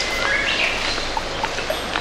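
Small birds chirping: a rising chirp near the start, then a few short high notes, over a steady hiss of outdoor background noise.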